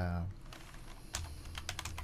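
Typing on a computer keyboard: a quick run of key clicks starting about half a second in, as a CSS property is typed into a code editor.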